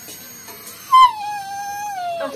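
A puppy lets out one long whining cry about a second in, starting with a sharp onset, dipping slightly in pitch and then holding. It is crying in pain while antiseptic is put on a wound from a big dog's bite.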